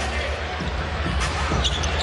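Live basketball game sound in an arena: steady crowd murmur with a basketball dribbling on the hardwood court. Sneakers give a few short high squeaks about a second in and again near the end.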